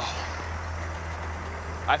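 A 2000 AM General M1097A2 Humvee's 6.5-litre V8 diesel engine running with a steady low hum, heard from inside the open cab.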